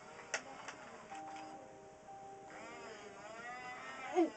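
Faint electronic sounds from an animatronic plush toy dog: a click about a third of a second in, a few held tones, then a wavering, whine-like sound in the second half.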